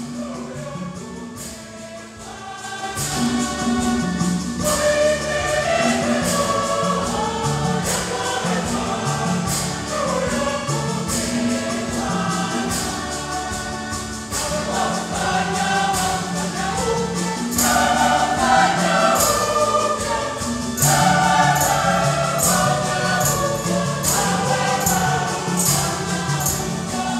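Church choir, mainly women's voices, singing a hymn in parts, accompanied by hand drums and jingling percussion keeping a steady beat. The singing swells to full strength about three seconds in.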